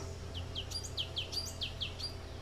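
Small bird chirping: a quick run of about eight short, high notes, each sliding downward, some overlapping.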